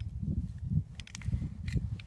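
Low rustling of a knit sleeve rubbing on the microphone, with a few small sharp clicks about a second in and near the end as the .45 pistol's magazine release is pressed and the empty magazine comes out.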